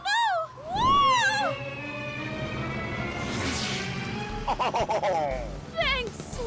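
Cartoon soundtrack: music with short, high, swooping wordless cries from an animated character, a long slowly falling whistle-like tone, and a brief whoosh in the middle.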